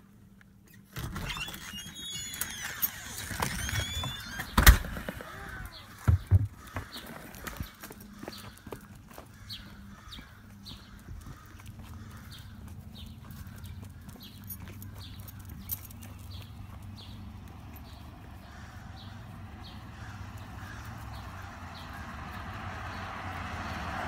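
A door being opened with some squeaking, then shut with a sharp knock about five seconds in, followed by a dog being walked on a leash outdoors: scuffing steps and faint ticks repeating about once a second.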